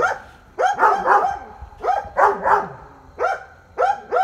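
Dog barking repeatedly: short, sharp barks, often two in quick succession, with brief pauses between the groups.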